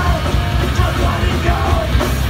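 Live rock band playing loud on electric guitars, bass and drums, with a singer yelling into the microphone.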